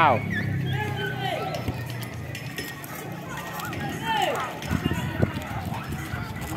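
Children's voices calling and shouting out while they play, over background chatter, with a few short knocks.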